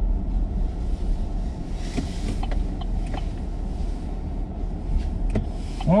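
Engine and road noise inside a moving vehicle's cabin: a steady low rumble with a few light clicks and rattles from the loose-fitting camera mount on the dash.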